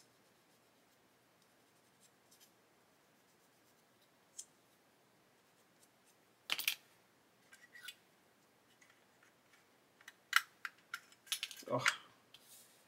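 Small plastic kit parts and a hobby knife being handled on a workbench: mostly quiet, with one sharp click about halfway through, a few light scrapes, then a cluster of sharp clicks and taps near the end.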